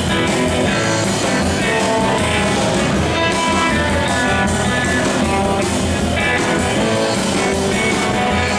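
Live rockabilly band playing, with electric guitar to the fore.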